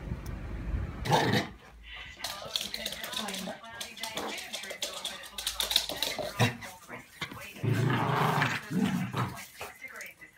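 Small pet dogs vocalising, with a television's voices in the background.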